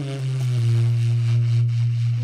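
Live big band jazz: a descending horn line lands on a long, low held note, with a few quieter notes held above it.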